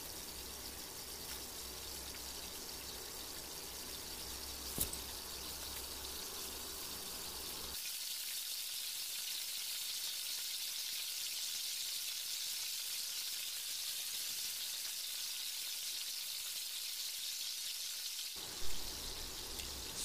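Masala-coated jackfruit pieces frying in shallow oil in an aluminium pot: a steady sizzle that grows a little louder about eight seconds in. A single sharp click about five seconds in.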